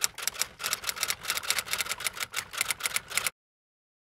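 Intro sound effect of rapid typewriter-like key clicks, about eight or nine a second, stopping abruptly a little over three seconds in.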